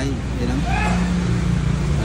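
A motor vehicle engine running with a steady low hum, with faint voices in the background.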